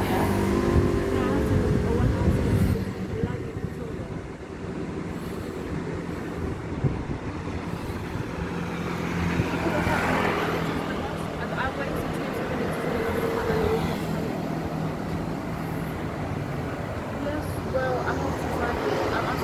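Road traffic: a vehicle goes by close at the start with a loud rumble, then a steady engine hum runs through the middle and fades.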